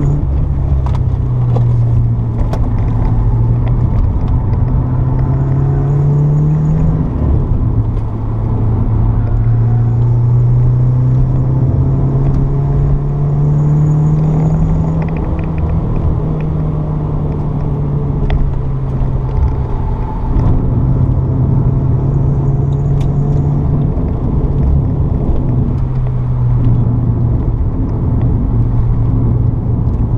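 Renault Sport Clio 182's 2.0-litre four-cylinder engine heard from inside the cabin while being driven hard on track. The engine note climbs under acceleration and drops back at gear changes, about seven seconds in and again around the middle. A constant rumble of road and tyre noise runs underneath.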